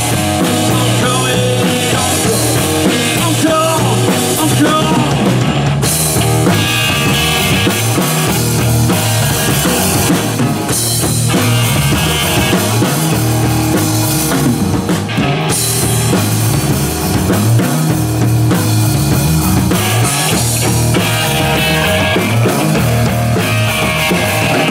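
Live rock band playing an instrumental passage between sung verses: electric guitar over bass guitar and a drum kit, with a steady beat.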